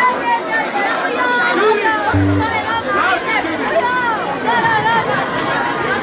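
Live band music, with electric guitars, mixed with the overlapping chatter of many voices in a crowd, and a short low note about two seconds in.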